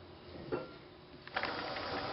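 Knife and cauliflower pieces handled on a wooden cutting board, with a single knock about half a second in. A louder steady hiss starts near the end.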